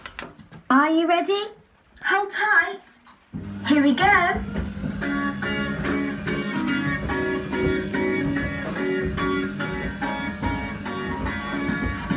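Kiddie ride train's loudspeaker plays three short rising voice-like calls, then a guitar music track starts about three seconds in and plays on steadily.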